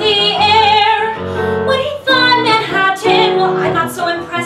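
A woman singing a musical-theatre song with keyboard accompaniment, holding a long note with vibrato in the first second before the phrase moves on.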